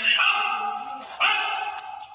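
A large dog giving two long, high-pitched cries, the second starting about a second in.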